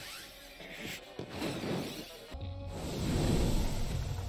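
Anime soundtrack with music and effects, with no dialogue. After a brief drop-out about two and a half seconds in comes a loud, deep rumble.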